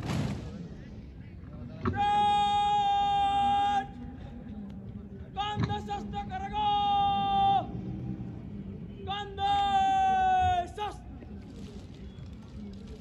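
Shouted drill words of command on a parade ground: three long, drawn-out calls held at one high, steady pitch, the second broken by a short catch and the last dropping away at its end, with a brief rush of noise right at the start.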